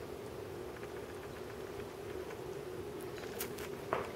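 Quiet room tone in an empty house: a faint steady hum under a low hiss, with a few soft ticks near the end.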